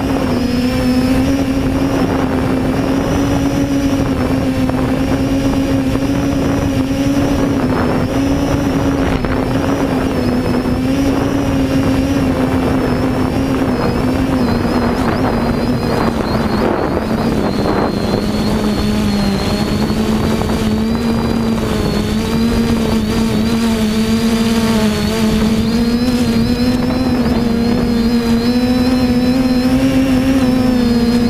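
3DR Iris+ quadcopter's four electric motors and propellers heard from its onboard camera, a steady loud whirring hum. Its pitch sags a little about halfway through and climbs back near the end as the motor speeds change.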